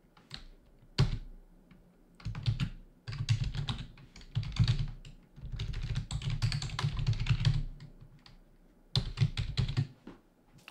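Typing on a computer keyboard: several runs of rapid keystrokes separated by short pauses.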